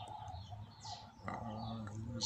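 Small birds chirping, with a few short high calls and one clear falling chirp about a second in, over a faint steady low hum.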